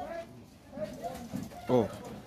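Quiet stretch with faint voices in the background, then a man's short "oh" near the end.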